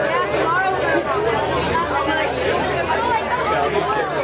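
Crowd chatter: many people talking at once, a steady babble of overlapping voices.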